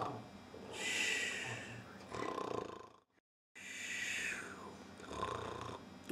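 A person acting out snoring: about four drawn-out snoring breaths, some rattling and some hissing, with a short gap of dead silence about halfway through.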